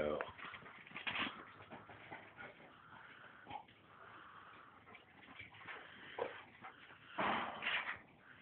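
Dogs at play, with scattered light knocks and small sounds and a louder, noisy burst near the end.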